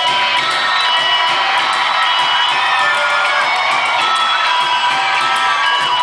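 Live rock band playing loud, with the crowd cheering and shouting over it.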